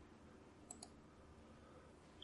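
Near silence: room tone, with two faint clicks in quick succession a little under a second in.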